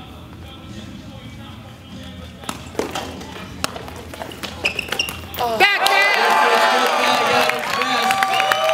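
A few sharp taps of a footbag being kicked, heard against low hall noise. About two-thirds of the way in, music comes in abruptly and takes over.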